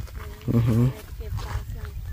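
A cow mooing once, a short low call about half a second in.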